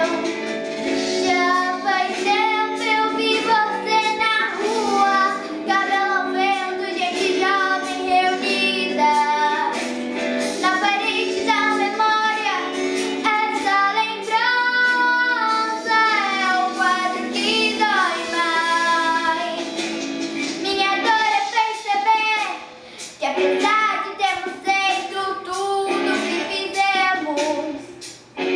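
A girl singing solo over instrumental accompaniment, with long held notes that waver in pitch and a short break about three quarters of the way through.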